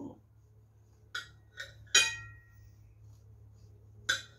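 A steel kitchen knife clinking against a china plate while slicing through a cake: two light taps a little after a second in, then a louder clink with a short ring about two seconds in.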